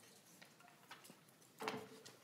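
Quiet hearing-room tone with a few faint ticks and clicks, and a brief, slightly louder knock or rustle near the end, typical of small handling noises at the committee table.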